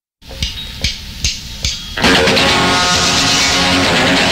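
Start of a fast punk rock song: four evenly spaced count-in hits over guitar-amp noise, then the full band of distorted electric guitar, bass and drums comes in loud about two seconds in.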